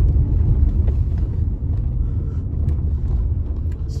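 Steady low rumble of a car's engine and tyres, heard from inside the cabin while driving along a street.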